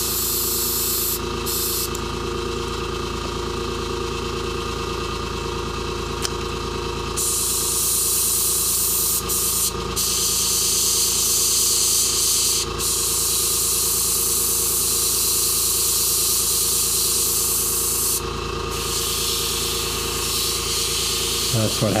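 Airbrush spraying paint: a steady hiss of air that stops for short moments several times and comes back stronger about a third of the way in, over a constant machine hum.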